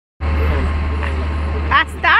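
Street noise: a loud, steady low rumble with people's voices, and one voice loudly calling out near the end.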